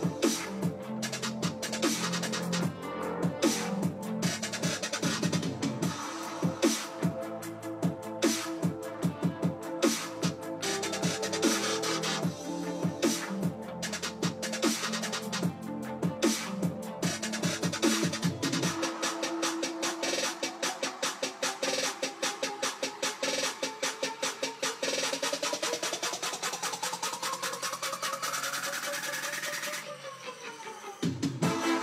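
Electronic future bass track playing, with bass and drums. About two-thirds of the way in the low end drops out, leaving rapidly chopped chords, and a rising sweep climbs over the last few seconds before cutting off.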